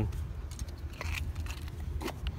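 A few small clicks and handling noise from a hand working the liftgate's button, over a low wind rumble.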